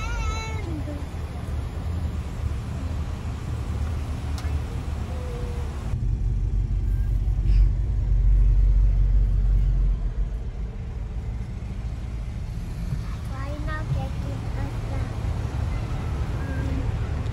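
Low engine rumble of idling cars heard from inside a car in a drive-thru line, swelling louder for a few seconds in the middle, with brief high whining calls at the start and again near the end.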